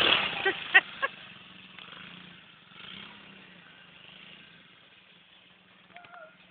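Small child-sized quad ATV's engine running steadily, growing fainter as it moves away.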